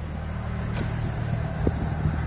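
Heavy truck's diesel engine running at low speed as the truck rolls slowly closer, a steady low hum with a couple of faint clicks.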